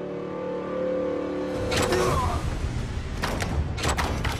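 Film soundtrack: sustained orchestral notes, then, about a second and a half in, a loud low rumble of sea and ship rises under the music, with several sharp cracks and thuds of wooden ship gear.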